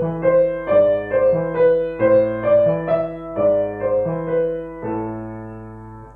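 Grand piano playing a slow, even legato three-against-two exercise: three notes in the right hand against two in the left. It ends on a held note that fades away.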